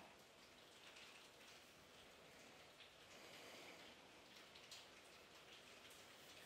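Near silence: faint room tone and hiss.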